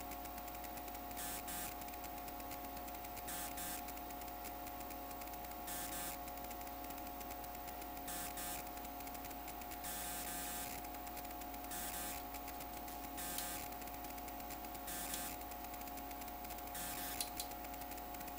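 Steady low hum made of several held tones over a soft hiss, with no distinct events: the background noise of running electronic bench equipment.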